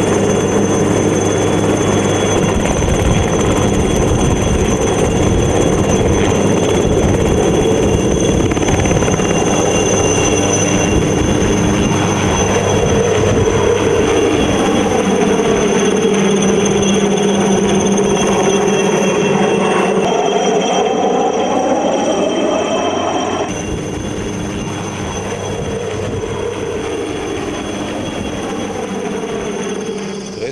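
Aérospatiale Alouette III turbine helicopter running with a steady high turbine whine over the rotor noise, taking off and flying overhead. Its sound bends in pitch as it passes above, then drops somewhat in level about three-quarters of the way through.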